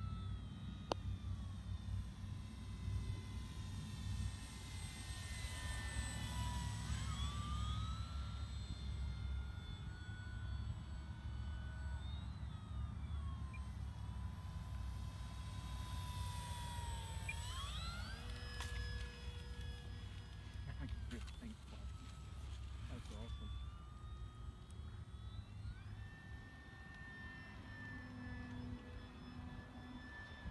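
Electric motor and propeller of an E-flite PT-17 radio-controlled biplane whining in flight. Its pitch rises and falls in smooth steps several times as the throttle is changed and the plane passes. Underneath runs a steady low rumble of wind on the microphone.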